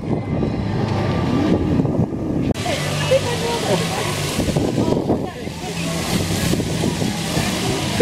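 Outdoor chatter of passers-by with wind on the microphone; about two and a half seconds in, an abrupt cut brings in a steady hiss of splashing fountain water under the voices.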